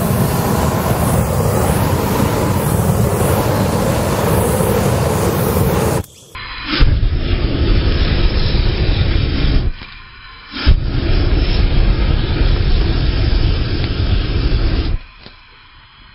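Raid-powered flamethrower (ignited insect spray) blasting a steady rushing jet of flame over the ground. It runs in three long bursts with brief breaks and stops near the end.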